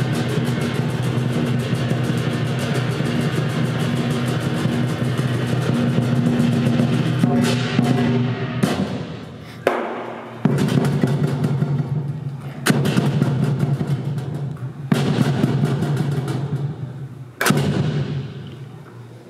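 Lion dance drum and cymbals playing a fast, continuous roll. About eight seconds in it breaks off, then single loud crashes follow every two to three seconds, each left to ring out.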